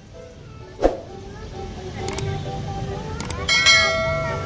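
Subscribe-button overlay sound effect: short clicks followed near the end by a bright bell-like chime of several steady tones, over faint background music. A single sharp knock sounds about a second in.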